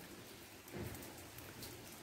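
Light rain falling, a faint steady hiss of drops on the ground, with a brief soft bump a little under a second in.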